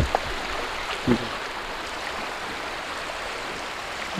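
Steady rushing noise with no distinct events, and a brief voice sound about a second in.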